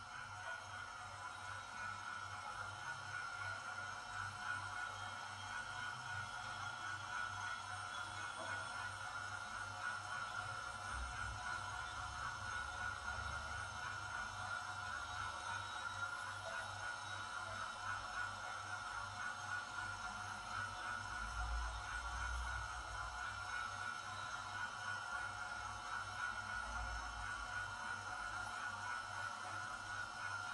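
Soft, steady ambient background music: a sustained drone tone with a low, even pulse underneath.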